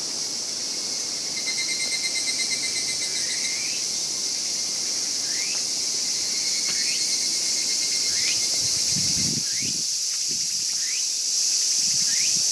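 A dense, steady chorus of insects in the woodland undergrowth, with a short rising chirp repeated about every second and a half. There are a few low thumps near the end.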